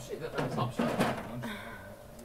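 Speech: people talking in conversation, with a few faint knocks among the voices.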